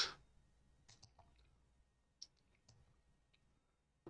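A few faint computer mouse clicks, scattered and irregular, the sharpest about two seconds in.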